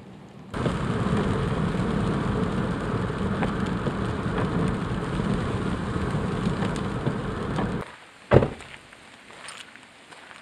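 Rain pattering on a car's windshield and roof, with wet-road tyre noise, heard from inside the moving car. It cuts off suddenly near the end and is followed by a single sharp knock.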